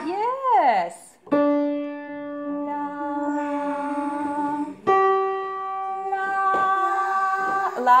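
Two long, steady sung notes, the second higher than the first, each starting with a piano note struck at the same moment. They are pitches given for the children to sing back. Before them, a voice swoops up and then down in pitch.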